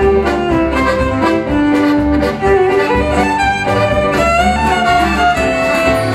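A live folk band's instrumental break: a fiddle carries the melody over strummed acoustic guitars, accordion and a steady double-bass beat.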